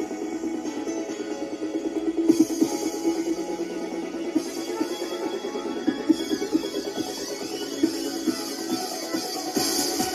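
Music playing through the small built-in Bluetooth speakers in the base of a G-shaped lamp.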